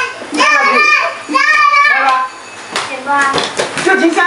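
Speech only: lively, high-pitched voices talking, with a short lull a little past the middle.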